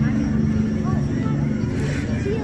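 A steady low engine drone, with people's voices around it.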